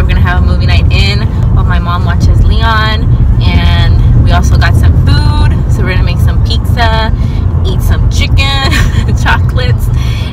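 Steady low rumble of a car heard from inside the cabin, under a woman's voice talking throughout.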